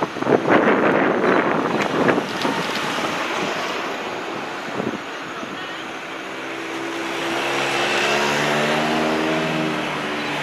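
Motor vehicles passing close by on the road: rushing noise surges in the first two seconds or so, then an engine's steady hum builds from about six seconds in and is loudest near the end.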